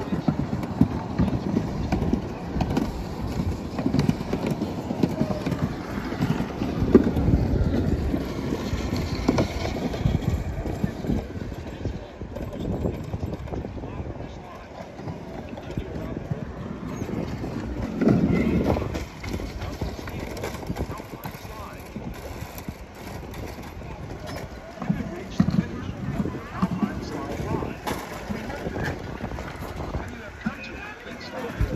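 Uneven low rumble of wind buffeting the microphone on a moving chairlift, with a few brief knocks and voices in the background.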